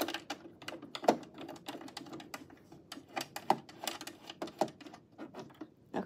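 Irregular light clicks and taps of plastic thumb screws and a metal hemming guide being handled and fitted onto the bed of a Janome coverstitch machine, with one sharper knock about a second in.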